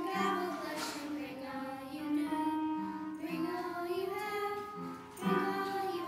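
A group of children singing a song together, holding each note for about half a second to a second, with a short breath between phrases about five seconds in.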